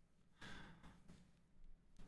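A man's soft breathy laugh: one quiet exhale about half a second in, with a fainter breath near the end, otherwise near silence.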